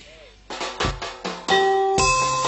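Live accompanying music starting up: a run of drum strikes from about half a second in, then ringing held notes joining at about a second and a half as the ensemble comes in.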